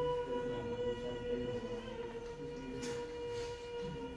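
A person holding a steady, high-pitched sung vowel at one unchanging pitch while the vocal folds are brought together and vibrate for a laryngoscopic examination, heard from a video played back in a lecture hall.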